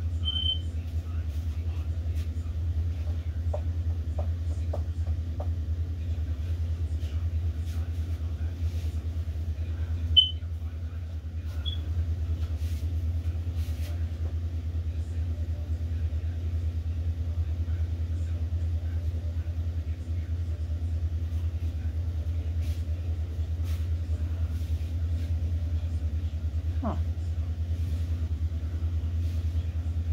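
A steady low hum runs throughout, with a single sharp click about ten seconds in.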